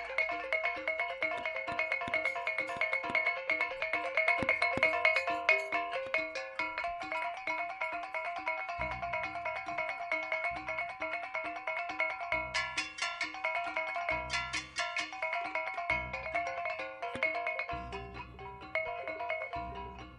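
Kuntulan ensemble playing instrumental music: a fast, continuous run of bell-like melodic notes over rapid kendang and frame-drum strokes. Deep bass-drum beats join about nine seconds in, roughly one every second or so.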